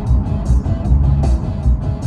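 Music with a steady, bass-heavy beat playing from the car stereo inside a moving car, with road noise underneath.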